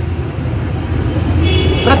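A steady low hum or rumble, with a man's narrating voice coming back in near the end.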